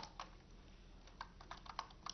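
Faint, irregular keystrokes on a computer keyboard as a line of text is typed, with the taps coming more often in the second half.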